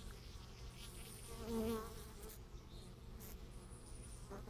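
Honey bees buzzing at the hive entrance, a faint steady hum, with one bee flying close past and buzzing louder for about half a second, about a second and a half in.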